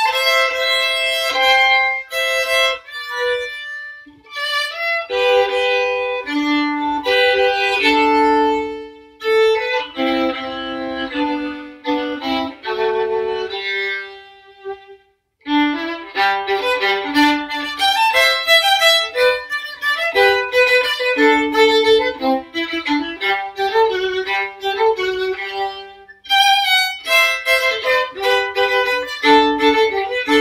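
Solo violin playing a melody, stopping briefly about halfway through, then going on with quicker, busier notes.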